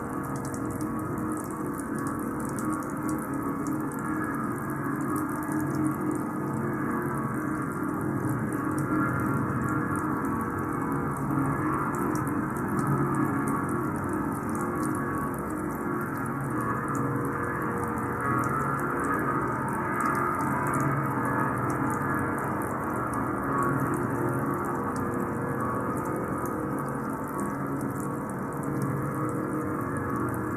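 Experimental electronic drone music: a dense, steady layer of many held tones, with a fine crackle up high.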